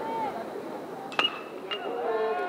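A metal baseball bat strikes a pitched ball about a second in: a sharp ping with a brief ringing tone, over a low crowd murmur. A fainter click with the same ring follows half a second later.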